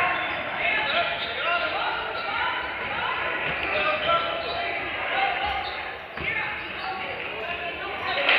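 A basketball thuds a few times on a hardwood gym floor amid the chatter and shouts of players and spectators, all echoing in a large gym.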